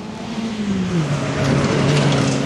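Rally car engine running at held revs. About a second in the pitch drops and then holds steady at a lower note while the sound grows louder, with a rushing noise over it.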